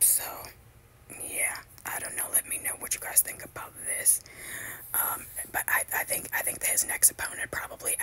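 Whispered speech, soft and continuous after a short pause about a second in, with strong hissing s-sounds.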